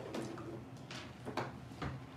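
A few light clicks and taps of small plastic Sour Flush candy containers being handled on a wooden table, about four in two seconds.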